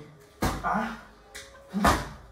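A man's short laughing exclamations ("ah"), over faint background music.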